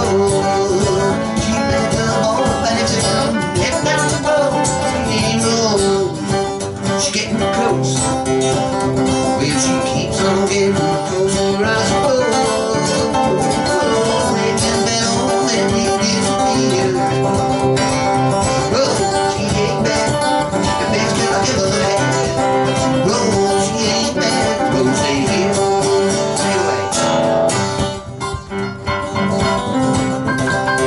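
Acoustic guitar and digital piano playing a song together, with a brief drop in loudness near the end.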